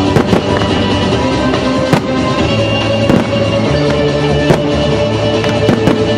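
Aerial firework shells bursting in the sky with several sharp bangs, the loudest about four and a half seconds in, over a steady musical soundtrack.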